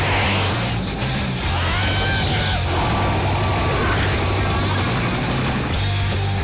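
Action-film soundtrack music with a steady bass line, over rushing wind noise that is loudest near the start.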